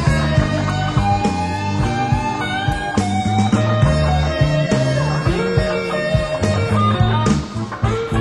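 Live blues band playing a slow instrumental passage: electric guitar with bent, sliding notes over bass and drums, with a cymbal wash near the end.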